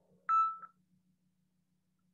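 Short electronic notification beep on a computer: a single clear tone that fades out within about half a second, with a faint second blip right after, typical of an incoming-message alert.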